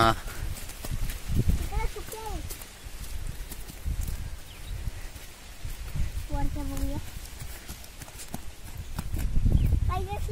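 Footsteps walking over dry straw and ploughed soil, an uneven run of soft crunching thuds.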